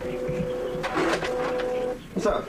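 Office printer running with a steady buzzing tone, broken by a brief noisier sound about a second in.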